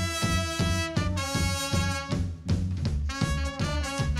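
Ska band playing live, instrumental: a horn section of trumpet, trombone and saxophone playing held chords in short phrases over drum kit and bass guitar.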